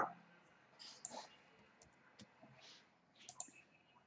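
Near silence with a few faint clicks from working a computer, about a second in and again near the end.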